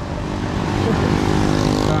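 Engine of a motor vehicle passing close by in traffic: a steady engine drone with tyre and road noise that swells about a second and a half in.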